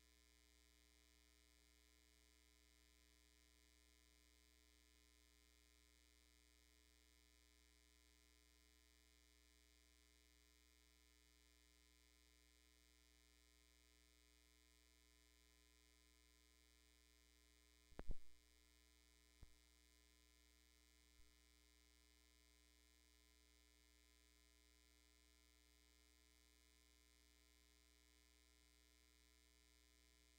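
Near silence: a faint steady hum, with one brief knock about eighteen seconds in.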